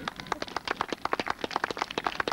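Scattered applause from a small outdoor audience: quick, irregular hand claps that keep going steadily.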